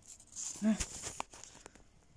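A cat biting and chewing a piece of raw peeled potato: a few crisp crunching clicks, the loudest about a second in.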